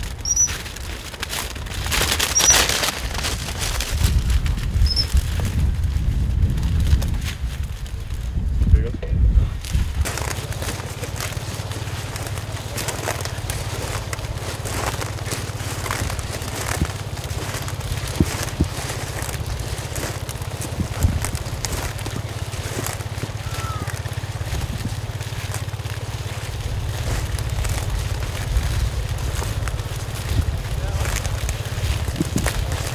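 Wind rumbling on the microphone in open farmland. It is gusty for the first several seconds, then settles to a steady low rumble. A few short high chirps come early on.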